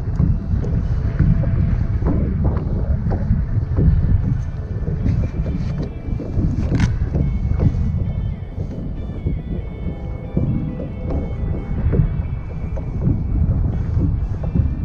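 Wind buffeting the microphone in a steady low rumble, with scattered small clicks and knocks of handling. Faint music with held tones comes in from about a third of the way through.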